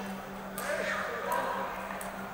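Table tennis ball clicking sharply off bats and table, two clicks a little under a second apart, over voices in the hall and a steady low hum.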